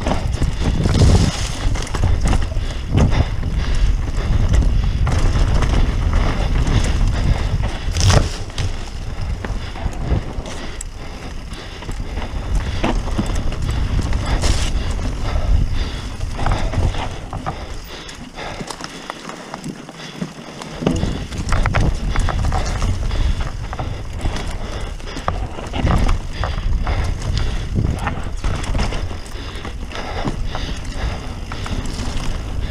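A mountain bike rattling and clattering over rocks and roots on a rough trail descent, with a run of sharp knocks, the loudest about eight seconds in. A steady low rumble on the microphone runs underneath and drops away briefly just past the middle.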